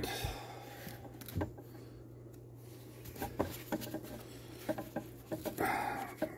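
Handling noise of a Bosch random orbital sander, switched off, being picked up and its sanding pad pressed by hand: a scattering of light clicks and knocks, with a short rub near the end, over a steady low hum.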